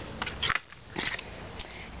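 Folded cardstock album pages rustling in a few short bursts as they are handled and closed by hand.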